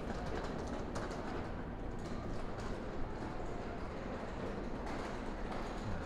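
Steady ambient noise of an open-air shopping arcade, with faint irregular clicks of footsteps on brick paving.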